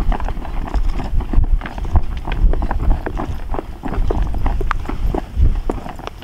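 Wind buffeting the microphone in a steady low rumble, with many irregular light clicks and taps throughout.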